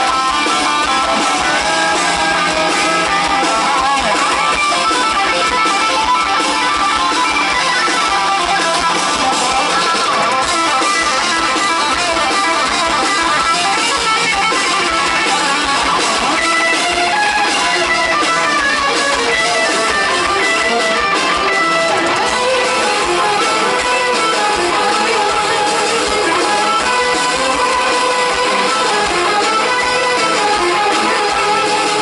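A heavy metal band playing live, with electric guitars, bass, drums and keyboards, steady and loud throughout.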